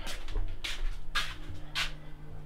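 Soft scuffing footsteps on a concrete floor, about four at walking pace, over a steady low hum.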